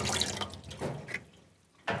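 Tap water running and splashing into a stainless steel sink as paint sprayer gun parts are rinsed clean, fading and stopping about a second and a half in.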